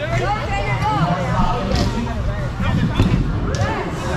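Many voices talking over one another in a large hall, with a couple of sharp knocks, about two and three and a half seconds in, from a scooter's wheels and deck on the ramps and concrete.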